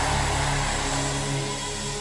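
Soft background music: one held chord sustained under the pause in the preaching, slowly fading.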